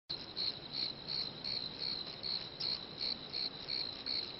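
Crickets chirping: a steady high trill that pulses about three times a second.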